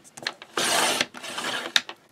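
Sliding-blade paper trimmer cutting a sheet of white cardstock. The blade scrapes along the paper for about half a second, then briefly again, with a few clicks.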